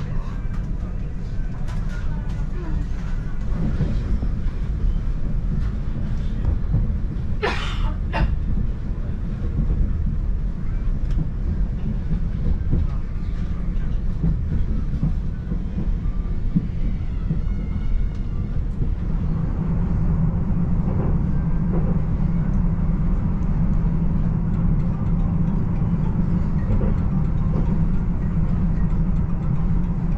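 Steady low rumble of a passenger train running, heard from inside the carriage, with a low hum that grows stronger about two-thirds of the way through and a brief hiss about eight seconds in.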